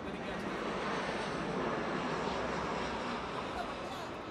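A steady rushing noise that swells through the middle and eases near the end, with indistinct voices underneath.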